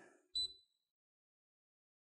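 A single short, high electronic beep from the Anycubic Wash and Cure station's touch control panel as a button is pressed, setting the wash time to six minutes.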